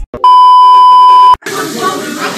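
A loud, steady censor-style bleep tone held for about a second, followed about a second and a half in by voices and room noise from a restaurant kitchen.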